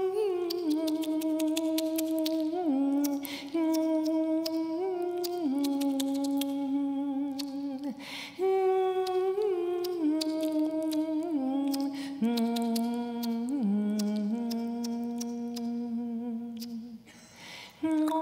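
A woman's solo voice singing a wordless, humming-like line of held notes that step up and down, with a rapid run of her own tongue clicks over it, a duet for one voice in extended vocal technique. She breaks briefly for breath about three and eight seconds in, and again near the end.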